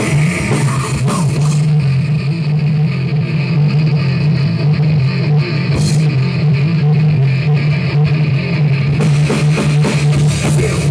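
Live heavy metal band playing: distorted electric guitars and bass hold a steady low riff over a drum kit. The cymbals drop out about two seconds in, return for one crash near the middle, and come back near the end.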